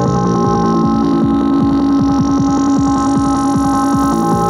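Tribal tekno pattern played on a Korg Electribe R mkII drum machine: electronic percussion under held synth tones. A low held tone comes in about half a second in, and a fast roll of short hits runs through the second half.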